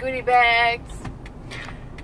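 A woman speaks a few words in the first second. Underneath and after her voice, a moving car's cabin fills with its steady low engine and road rumble.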